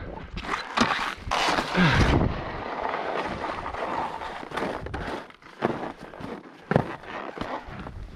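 Skis scraping and sliding over wind-compacted snow, with wind buffeting the microphone, in uneven rushes of noise broken by short scrapes and knocks; the loudest rush comes about two seconds in.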